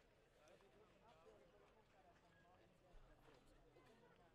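Near silence with faint, distant voices and a few light clicks; no kart engines are running.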